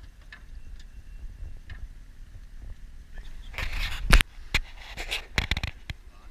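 A burst of scraping and several sharp knocks against a boat's hull or deck in the second half, the loudest about four seconds in, over a low rumble.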